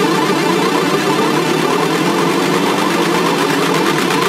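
Progressive house / melodic techno DJ mix in a dense, steady build-up section with no bass, a wash of layered synth sound.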